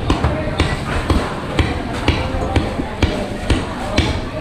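Butcher's cleaver chopping into a leg of meat on a wooden chopping block, steady blows about two a second, over background voices.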